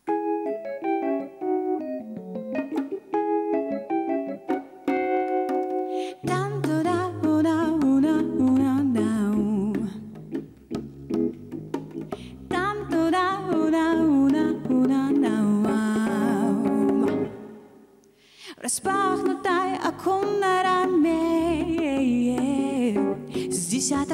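Live melancholic jazz played on a Nord Electro 3 stage keyboard with an electric-piano sound. The keyboard plays alone at first, then bass notes and a woman's singing come in about six seconds in. The music breaks off briefly about three-quarters of the way through, then the voice and keyboard resume.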